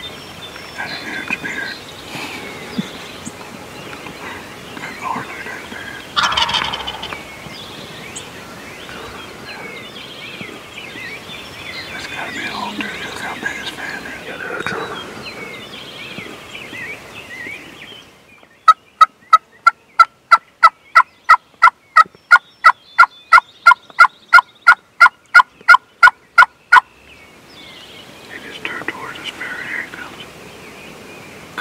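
Wild turkey gobbler calling in the open, with small birds chirping behind; one strong gobble sounds about six seconds in. Past the middle comes a loud, evenly spaced run of about two dozen sharp notes, roughly three a second, lasting some eight seconds.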